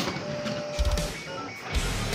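Two Beyblade spinning tops whirring and scraping around a plastic stadium floor, with background music playing over them.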